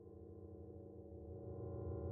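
A low electronic drone of several steady held tones, fading in and growing steadily louder.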